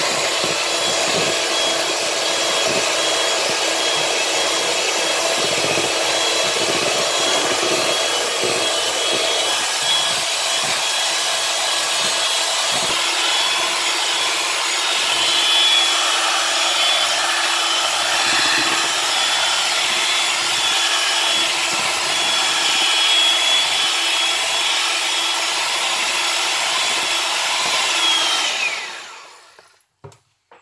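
Electric hand mixer running steadily with a high whine, its beaters whisking through batter in a bowl. Near the end it is switched off and winds down, the whine falling before the sound stops.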